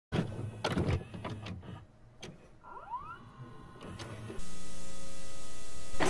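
VCR tape-playback sound effect: mechanical clicks and clunks, a short rising whir, then from about four seconds in a steady hiss of static with a hum.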